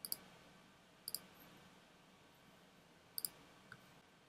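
Faint computer mouse clicks: three quick pairs of sharp clicks, at the start, about a second in and about three seconds in, with a softer single click shortly after the last pair.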